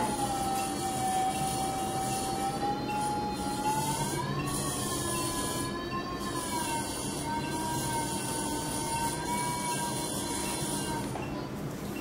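Phacoemulsification machine's aspiration tone: one continuous pitched tone whose pitch follows the vacuum level as the handpiece aspirates thick epinuclear lens material. It glides up about four seconds in, eases back down, and stops shortly before the end.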